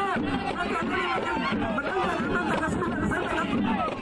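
Crowd chatter: many voices talking at once, none standing out.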